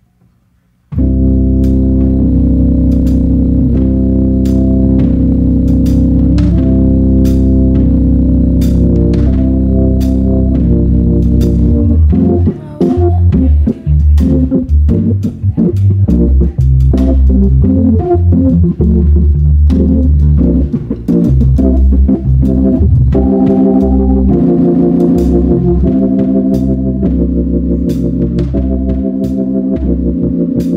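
Church organ playing an accompaniment introduction: sustained chords over bass notes starting about a second in, then a busier passage with moving bass and short, separated chords from about halfway.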